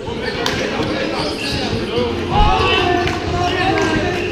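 A basketball bouncing on an indoor court during play, the knocks carrying in a large sports hall, over the voices of players and spectators.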